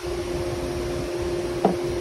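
Steady mechanical hum with a constant pitch, and one brief sharp sound about one and a half seconds in.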